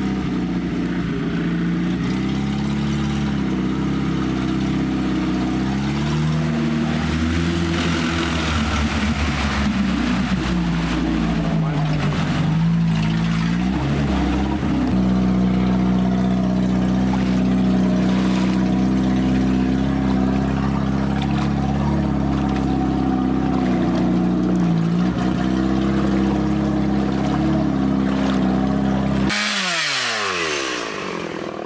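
Off-road vehicle engine running steadily while driving through a shallow river, its pitch dipping and shifting now and then; it cuts off near the end.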